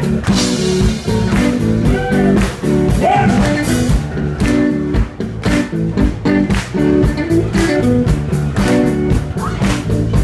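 Live blues band playing: electric guitar over bass guitar and drums, with a steady beat.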